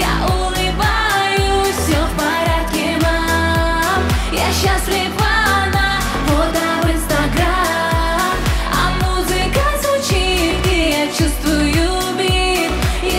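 Russian dance-pop music with a steady electronic beat and a melodic lead, with a vocal line but no clear lyrics.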